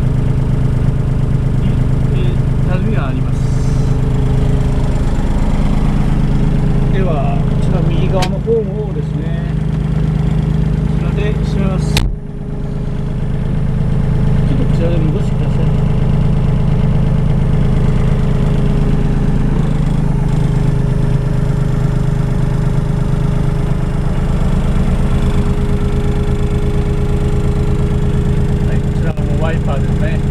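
Komatsu WA20-2E wheel loader's 1,200 cc three-cylinder diesel (3D78AE) idling steadily, heard from inside the cab. A sharp click about eight seconds in and a louder knock about twelve seconds in come from the cab door handle and latch being worked.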